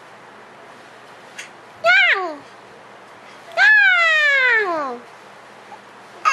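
Infant vocalising in two high squeals that slide down in pitch: a short one about two seconds in and a longer, drawn-out one just past halfway.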